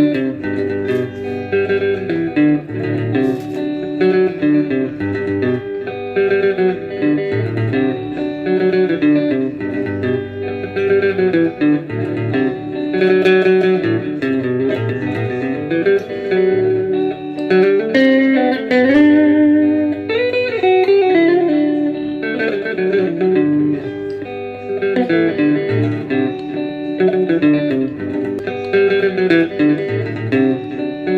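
A guitar playing a tenor rhythm pattern over a chord one–five progression: a steady run of picked notes, with a few sliding notes around the middle.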